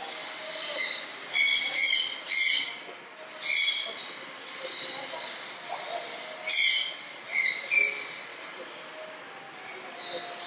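A bird calling in short, high, squealing notes: a quick run of them in the first four seconds, then three more around seven seconds in.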